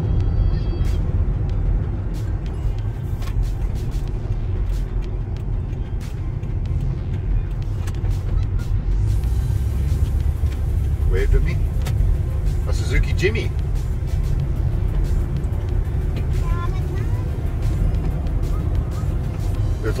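Toyota Tarago van driving on a winding road, heard from inside the cabin: a steady low rumble of engine and tyre noise.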